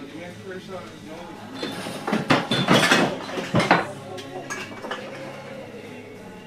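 A scuffle between people: about two seconds in, a loud commotion of raised voices and knocks lasts about two seconds, over music playing in the room.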